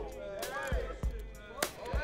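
Film soundtrack: music under the voices of a crowd, cut by a few sharp hits, the loudest about one and a half seconds in.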